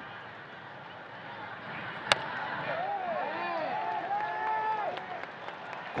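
Baseball stadium crowd noise, with a single sharp pop about two seconds in as a pitch smacks into the catcher's mitt. After that, many voices chant in rising-and-falling tones for a few seconds.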